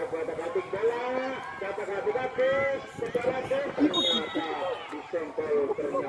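People talking and calling out, speech running on through the whole stretch.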